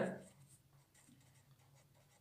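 A spoken word trails off at the very start. Then a felt-tip marker scratches faintly on paper as it writes letters in short strokes.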